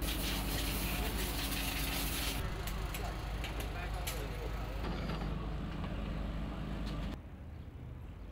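Rally service-park background noise: a steady mechanical hum and hiss with a few sharp clicks and faint voices. It drops suddenly to a quieter hum about seven seconds in.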